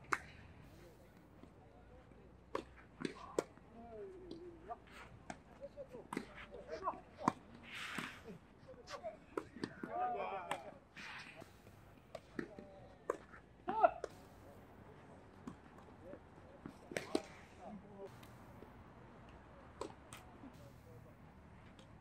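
Tennis balls struck by racquets during a doubles rally: irregular sharp pops, one much louder than the rest about two thirds of the way through, with short bursts of players' voices between.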